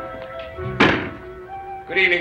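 A door shutting with a single heavy thunk about a second in, over background music of steady held notes.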